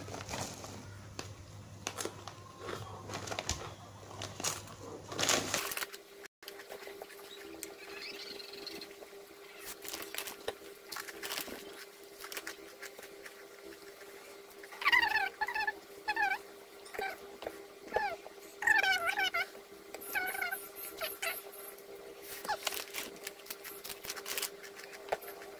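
Crackling of a plastic snack bag being handled, with scattered small clicks of eating by hand. Starting about halfway through, a run of short high calls from an animal comes in clusters and is the loudest sound.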